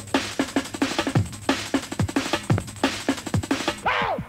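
A drum and bass track playing, with fast, busy breakbeat drums and deep bass notes that slide downward in pitch. The sound comes off an off-air cassette recording of a pirate radio broadcast.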